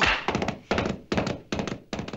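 Cartoon sound effects: a heavy thump as the grandmother kicks the donkey, then a quick run of hollow wooden knocks.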